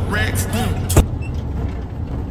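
A rap track with vocals that cuts off abruptly about a second in, leaving the steady low engine and road drone inside a semi-truck cab.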